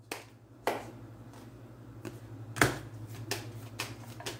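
A few sharp clicks from a hand working a deck of tarot cards, the loudest about two and a half seconds in, over a steady low hum.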